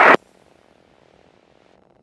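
The tail of an air-band radio transmission cuts off abruptly at the very start, followed by near silence with only a faint hiss as the receiver goes quiet between calls.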